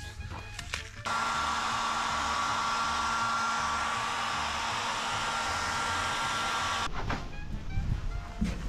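Hand-held hair dryer blowing hot air on kinesiology tape to warm it so the adhesive sticks better. It switches on about a second in, runs as a steady rush with a faint high whine, and cuts off about a second before the end.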